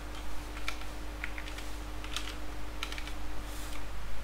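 Computer keyboard typing: about a dozen irregular keystrokes as code is entered, over a faint steady hum.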